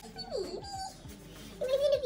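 A chihuahua whining: a few short whines, one falling in pitch, then a longer held whine near the end.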